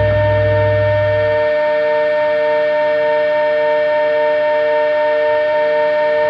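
Electronic drone from a noise-music intro: steady high held tones with one tone pulsing on and off about twice a second, siren-like. A low hum underneath drops out about a second and a half in.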